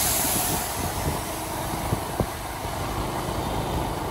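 Motor scooter on the move: its engine running under steady wind and road noise, with a high hiss fading out in the first second and a couple of short knocks about two seconds in.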